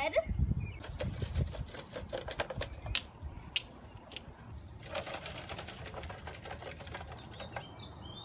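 Windfall apples and plums tumbling out of plastic buckets onto a mulch-covered garden bed: a few low thumps, two sharp clicks about three seconds in, then a quick dense rattle of fruit knocking out of the bucket in the last few seconds.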